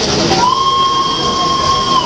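Model train whistle sounding one long steady high note, starting with a short upward slide about half a second in and held to the end, over the background noise of a busy hall.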